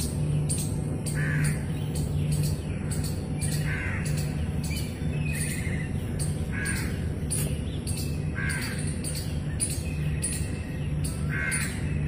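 A bird calling repeatedly, one short call about every two seconds, over background music with a steady beat.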